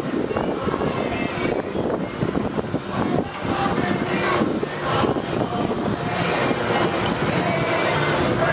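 Steady roar of a glassblowing studio's gas-fired furnace and glory-hole burners with their blowers, a continuous rumbling hiss with a faint hum.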